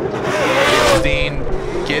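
Ford Mustang RTR Spec 5-FD drift car's engine running hard while drifting, its pitch swinging up and down, with a loud rushing noise through about the first second.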